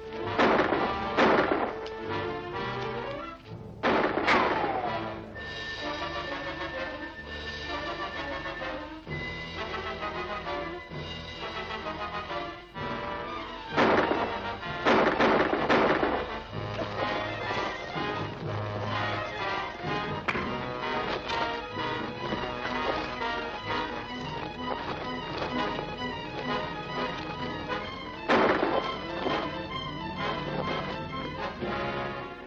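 Tense orchestral film score running throughout, with sharp gunshots breaking through it: two near the start, one about four seconds in, three in quick succession around the middle, and one near the end.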